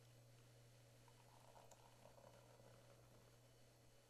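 Very faint sound of beer pouring from a bottle into a glass goblet and foaming up into a thick head, most audible in the middle, over a steady low hum.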